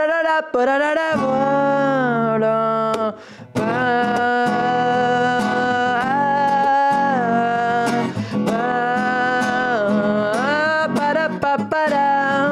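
Wordless singing in long held notes that glide from pitch to pitch, over piano chords, with a short break about three seconds in.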